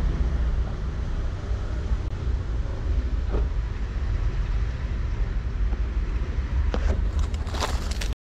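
Steady low outdoor rumble, with a few faint short rustles near the end.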